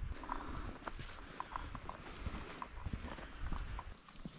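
Quiet outdoor background with a series of faint, short ticks at irregular intervals.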